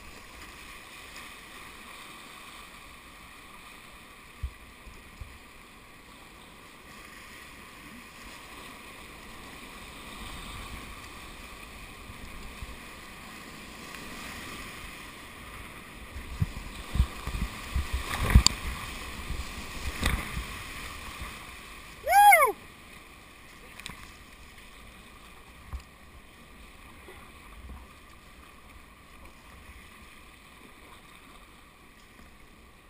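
Rushing whitewater of a river running high, heard from a kayak, with splashes and knocks of paddle strokes and water hitting the boat in the middle. About two-thirds of the way through comes one short, loud whoop.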